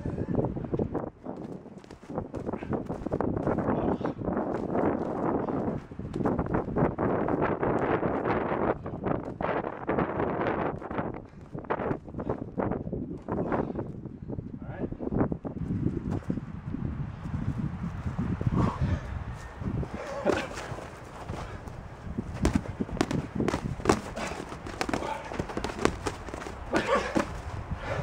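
Padded boxing gloves smacking against bare skin and gloves, and feet scuffling and stepping on dry grass and leaves, in an irregular run of short sharp knocks.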